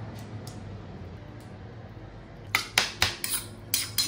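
Metal spoon clicking and scraping against a small stainless steel bowl while diced raw fish is stirred into its marinade, a quick run of sharp clicks in the last second and a half. Before that, only a faint, steady low hum.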